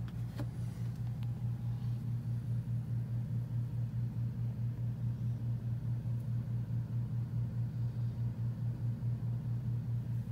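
A steady low hum that throbs regularly, about four or five pulses a second.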